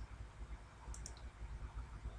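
Computer mouse button clicking, a quick pair of ticks about a second in, over a faint low hum.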